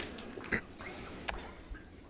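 Quiet indoor sports-hall ambience with a low background hum and two short, sharp clicks, about half a second in and just over a second in.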